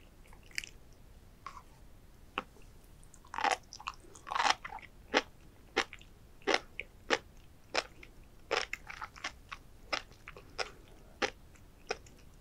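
Sea grapes (Caulerpa racemosa) and flying fish roe popping and crunching as they are bitten and chewed close to the microphone. A few scattered pops come first, a dense cluster follows a few seconds in, and then sharp pops settle to about one or two a second.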